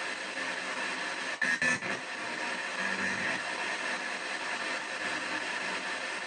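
P-SB7 spirit box sweeping down the FM band: steady radio static hiss, broken by a brief louder snatch of sound about a second and a half in.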